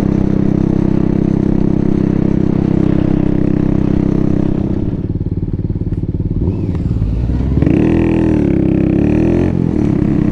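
The 125cc engine of a 2003 Baimo Renegade V125 custom cruiser running steadily under way. Between about eight and nine and a half seconds in, the engine note dips in pitch and climbs back up.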